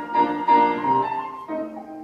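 Grand piano playing a solo passage of the accompaniment: a run of notes and chords, the last one struck about three-quarters of the way through and left to ring.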